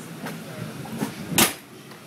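A single sharp thump about one and a half seconds in, with a fainter knock just before it, over a steady low hum.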